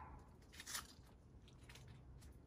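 Near silence, with a brief faint crackle or rustle about three quarters of a second in and a weaker one near the end.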